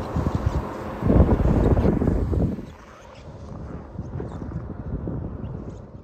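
Wind buffeting the microphone: a low rumble that swells loudest about a second in for a second and a half, then drops to a fainter rush.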